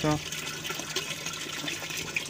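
Cooling water running out of a pipe and splashing steadily into a plastic bucket, the return flow of a home-built solar-panel water-cooling circuit.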